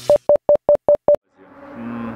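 A rapid series of short electronic beeps at one steady pitch, about five a second, six of them, stopping about a second in. This is an edited-in sound effect under the title card, followed by faint background sound.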